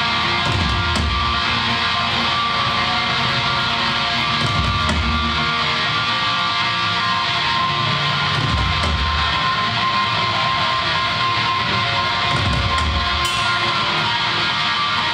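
A heavy metal band playing live: distorted electric guitars, bass and a drum kit, heard from within the audience in a reverberant hall. The sound is loud and dense throughout, with a heavy low-end surge about every four seconds.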